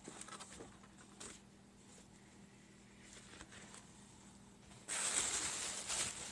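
Faint handling of paper with a few soft clicks, then, about five seconds in, a sudden loud crinkling rustle of tissue paper being handled.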